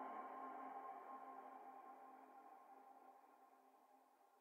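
The closing tail of a psytrance track: sustained electronic tones fading out and dying away into near silence about three seconds in.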